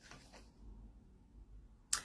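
Near-quiet room tone during a pause in a woman's talk, with one brief sharp click just before the end.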